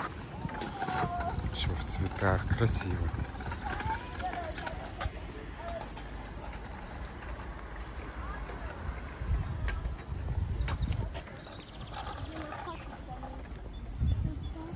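Outdoor street ambience: a steady low rumble, as of wind on the microphone, with faint voices in the first few seconds and a few light clicks.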